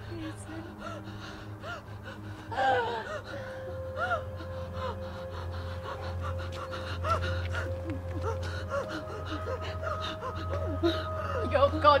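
A young woman gasping and whimpering in distress, with sharper gasps a few seconds in, over a low, sustained drone of held music tones.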